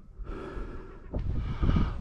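A man's breathing close to the microphone, audible breaths in and out, joined about a second in by a low rumble and a few soft thumps.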